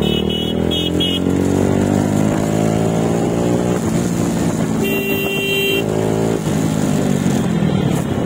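Motorcycle engine running under way, its pitch climbing as it accelerates, dipping briefly past the middle and rising again. Another vehicle's horn beeps three times near the start, and a horn sounds once for about a second around five seconds in.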